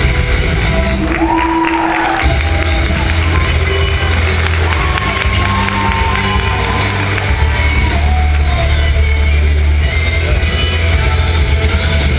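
Loud rock music with singing over a steady heavy bass, with audience cheering and whoops over it.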